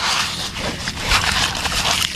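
A hand digging through wet sand in a plastic toy dump truck's bed: steady gritty crunching and scraping.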